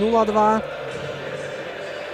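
A man's commentary voice ends about half a second in, followed by a steady, even background hum of the ice arena with no distinct events.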